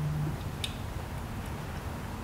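Motor oil pouring slowly from a thin-necked plastic jug into an engine's oil filler, with a few faint ticks over a low, steady background hum.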